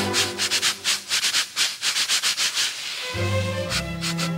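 Scratching at a scalp and hair: quick rasping strokes, several a second, loud and exaggerated. Music with held low brass-like notes comes back in about three seconds in.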